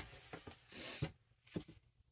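Soft rustling and a few light clicks and knocks as a cross-stitch project on its frame is handled and swapped for another.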